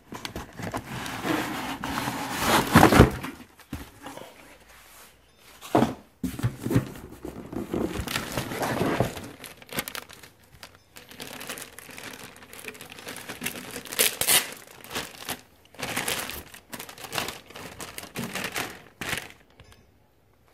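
Clear plastic bag crinkling and rustling in irregular bursts as a wrapped electrical panel is handled and unwrapped, loudest about two to three seconds in, with an occasional knock.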